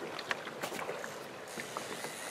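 Steady rush of river current with water lapping against the side of a small boat, and a few faint knocks.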